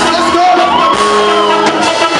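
Live gospel praise music: a drum kit playing under singing, with shouting voices.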